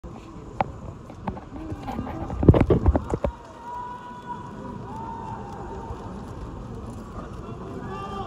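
Indistinct voices echoing in a large indoor stadium, with a cluster of loud knocks about two and a half to three seconds in.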